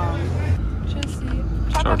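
Low, steady rumble of a coach bus on the move, heard from inside the passenger cabin, setting in about half a second in.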